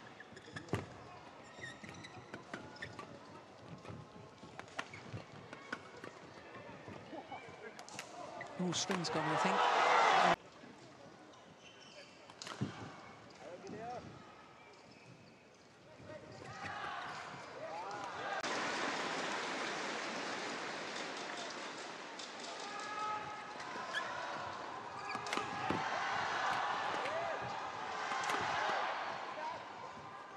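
Badminton rally: rackets hitting the shuttlecock in sharp, quick strokes. A loud burst of crowd cheering follows the winning point and cuts off abruptly. Later a long swell of crowd cheering and shouting runs through the next rally.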